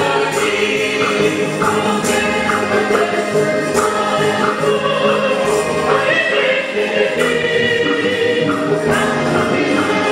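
Church choir singing a hymn with instrumental accompaniment, over a regular percussive beat.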